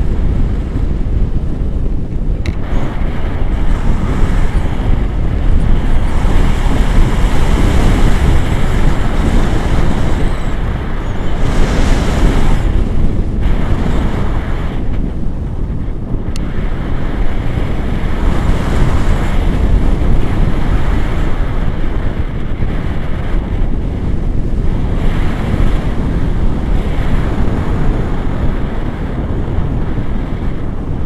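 Airflow buffeting an action camera's microphone in flight under a tandem paraglider: a loud, steady rush with a deep rumble, swelling and easing, loudest and brightest about twelve seconds in.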